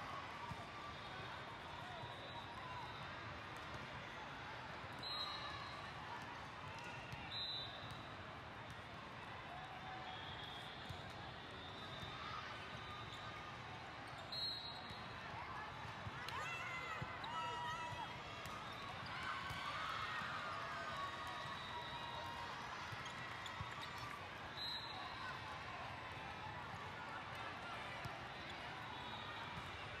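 Steady din of a large indoor volleyball tournament: many overlapping voices echoing in a big hall, with volleyballs being hit and bouncing on the courts now and then.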